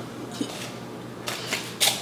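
Two short crinkling rustles in the second half, from a foil-covered plastic cup being handled.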